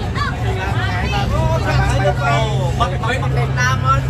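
Several people talking over one another in lively chatter, with a steady low drone underneath.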